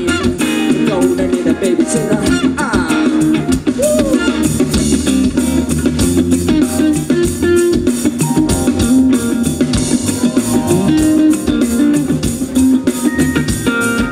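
Live funk band playing, with electric guitar, bass guitar and drum kit to the fore in a steady groove.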